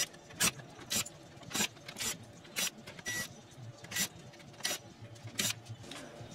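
Cordless drill-driver backing screws out of a circuit board, heard as about a dozen short, sharp sounds roughly two a second.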